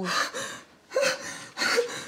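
A woman gasping for breath in panic, three quick, breathy gasps: panicked, rapid breathing after waking from a nightmare.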